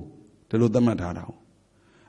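Speech only: a monk's voice giving one short spoken phrase about half a second in, between pauses, as part of a Burmese Dhamma talk.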